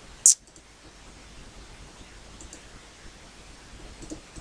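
A single sharp computer mouse click about a third of a second in, then a low background hum with a couple of faint ticks.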